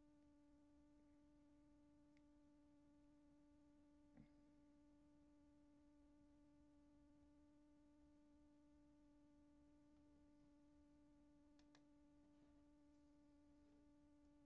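Near silence: a faint steady hum holding one pitch, with a soft tick about four seconds in.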